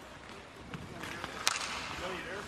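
Ice-level sound of an NHL game in an empty arena: skate and stick noise with faint shouting from the ice, and one sharp crack about one and a half seconds in.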